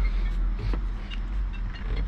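Steady low rumble of road traffic going by, with a couple of faint clicks.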